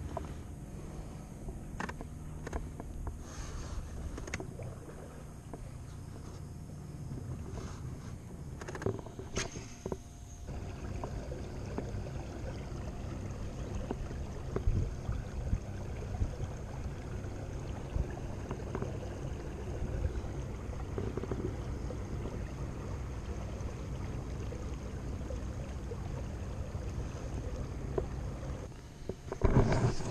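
Fishing kayak under way across open water: a steady low rush and hum of water along the hull, with scattered small knocks and clicks in the first ten seconds, then a denser, slightly louder steady rush.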